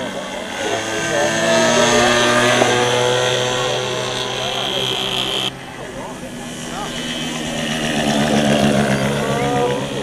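Small engines of radio-controlled model airplanes running as the planes fly, with a steady buzzing note that rises and falls in pitch and loudness. The sound cuts down suddenly about halfway through, then builds again near the end.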